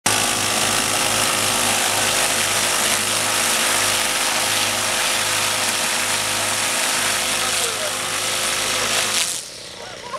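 Ryobi string trimmers running at speed with their line heads down inside plastic buckets, the spinning line thrashing and spraying inside the bucket in a loud, steady noise. It cuts off about nine seconds in.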